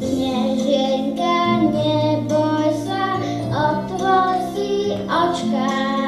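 A young boy singing a song into a microphone over instrumental accompaniment.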